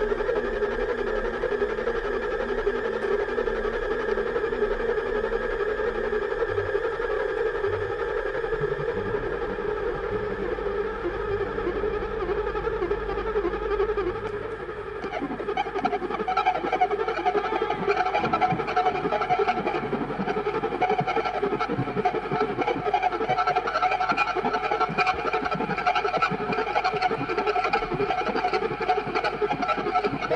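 Live improvised instrumental jam of a band of bass, drums, guitar and synthesizer: long sustained droning chords that thicken into a denser, busier passage from about halfway through.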